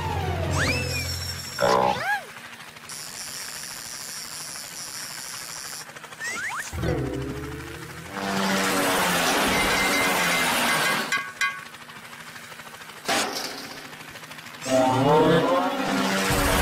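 Cartoon soundtrack of music and comic sound effects: quick sliding whistle-like glides, a loud noisy rush lasting about three seconds in the middle, and a few sharp hits.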